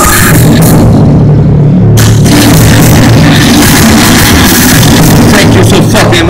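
Loud live industrial metal band playing, with heavy bass, drums and distorted guitar. The treble cuts out for about a second early in, while the low end keeps pounding.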